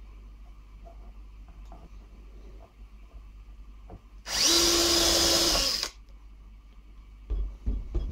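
A drill-driver spinning a thin SNAPPY TOOLS self-centering drill bit to bore a pilot hole into pine through the mounting hole of a brass barrel bolt: one short burst of drilling, about a second and a half long, a little past the middle. Two dull knocks follow near the end.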